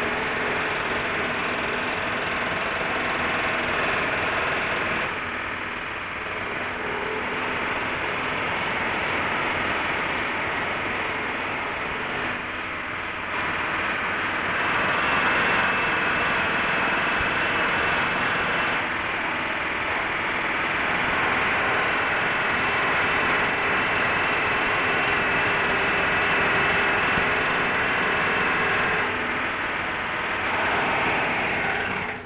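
Steady hiss and hum of an early film sound recording, with no distinct events. Its level shifts a few times.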